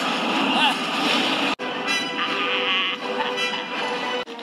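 Emperor Palpatine's evil laugh, a man's voice laughing over film score music, with a brief dropout about one and a half seconds in.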